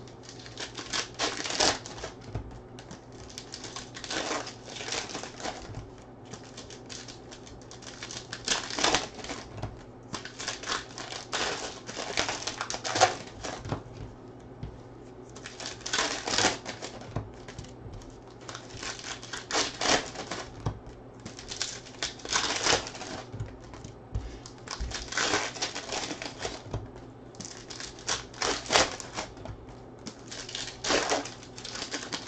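Trading cards being thumbed through one by one in the hands: runs of quick dry clicks and slides, coming in bursts about every three seconds.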